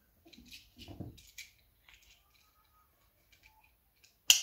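Near silence with a few soft clicks and rustles in the first second and a half: a luggage scale's strap being handled and threaded around a suitcase's plastic carry handle.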